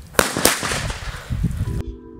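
Two firecrackers bursting about a quarter of a second apart, set off electrically from a car battery; only two of the four laid out go off. Background music comes in near the end.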